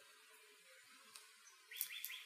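Near silence, then about three-quarters of the way in a bird starts a quick run of short, high chirps.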